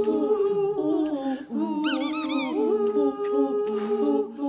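Several women humming a tune together without words, in parallel held notes that step from pitch to pitch. A brief high, squeaky trill cuts in about two seconds in.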